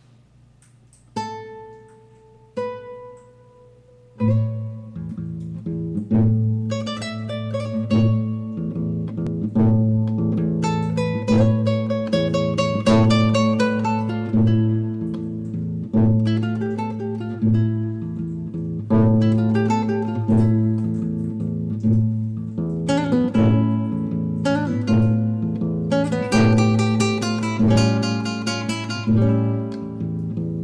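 Solo nylon-string classical guitar played fingerstyle. Two single notes ring out in the first few seconds, then from about four seconds in it plays a steady flow of plucked melody notes over a repeating bass.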